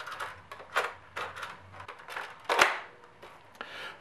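Hard plastic clicks and knocks from a Vortex Diatron toy disc blaster as its disc magazine is worked into place: a few separate clicks, the loudest a little past halfway.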